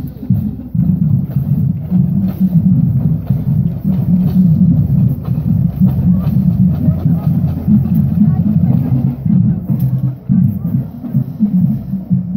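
High school marching band drumline playing a marching parade cadence, a steady run of drum strokes while the band is on the move.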